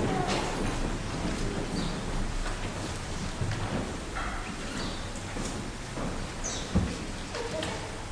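Footsteps and shuffling on a wooden floor, with scattered light knocks and one sharper thump near the end.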